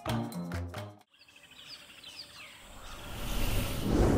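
Guitar background music cuts off about a second in. It is followed by a logo sound effect: a swelling whoosh of noise with a few short bird-like chirps, building to its loudest near the end.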